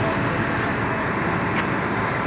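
Steady roar of freeway traffic.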